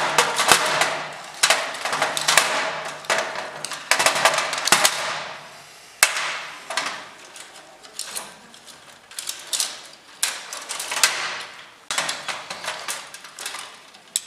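Metal parts of a fluorescent light fitting clattering and clinking as the steel lamp-holder bar is lifted, moved and set down on the sheet-metal housing: irregular sharp knocks, each with a brief metallic ring.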